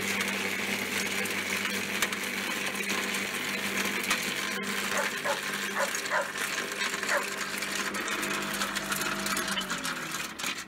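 AL-KO garden shredder running, its motor humming steadily as it chips acorns fed into the hopper. A run of short animal calls comes about halfway through, and the motor starts to wind down right at the end.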